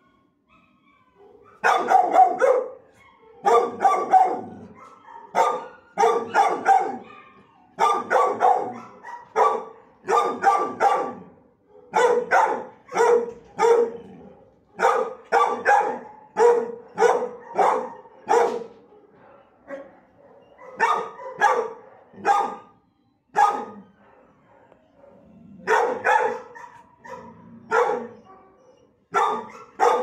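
A shelter dog barking over and over in quick runs of a few sharp barks, starting about two seconds in, with brief lulls between runs.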